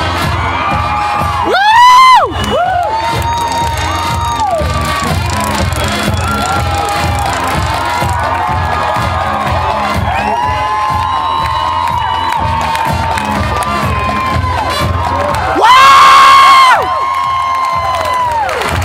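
A marching band drumline plays a steady beat while the stands cheer and whoop. Two loud whoops come close by: a short rising one about two seconds in and a longer, held one near the end.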